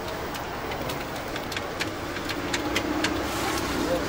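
Steady rumble of street traffic heard from inside a telephone box, with a string of short, sharp clicks at uneven intervals through the middle.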